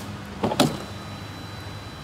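A car door being unlatched and pushed open about half a second in: a sharp click, with a short grunt as the driver climbs out. A steady low hum runs underneath.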